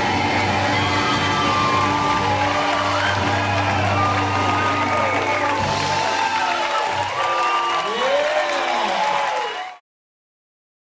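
A live band with electric guitar, trumpet and congas holds its closing chord while the audience cheers, whoops and applauds. The held low note drops out about seven seconds in, and all the sound cuts off suddenly just before the end.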